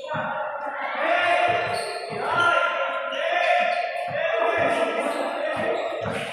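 A basketball being dribbled on a concrete court, a run of dull bounces about two a second, under loud shouting voices of players on the court.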